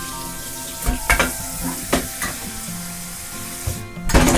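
A steady sizzling hiss, like food frying, under soft background music, with a few sharp knocks or clicks about one and two seconds in.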